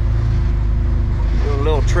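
Side-by-side UTV engine running steadily as it drives along a trail, a low, even drone.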